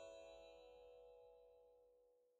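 The fading tail of a bright chime sound effect on a title card: several ringing tones held together, dying away slowly and fading out near the end.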